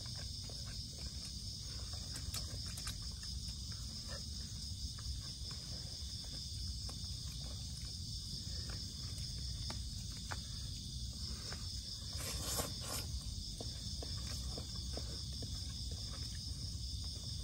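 Steady, high-pitched, finely pulsing chorus of night insects. Over it come scattered soft clicks and taps of plastic food containers being handled during eating, and a brief rustle about twelve seconds in.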